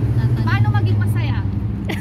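Steady low engine rumble of motor-vehicle traffic, with short bits of a woman's speech about half a second and a second in.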